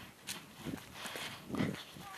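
Footsteps and rustling of a person moving through grass and undergrowth, with a few dull thumps from steps and handling of the phone.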